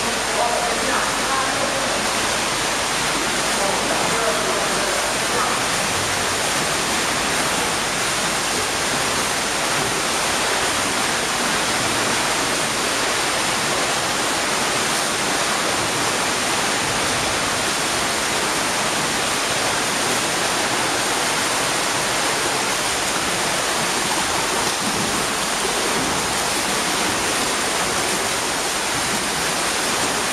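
Swimmers splashing and kicking through the water at front crawl, a steady rush of water noise that does not let up.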